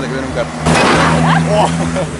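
A motor vehicle going by on the road close to the camera: a loud rush with a steady low engine hum, starting suddenly under a second in.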